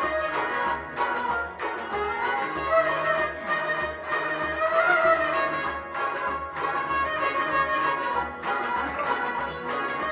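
Harmonium playing a sustained melody in traditional Sufi devotional music, over a steady low drum beat.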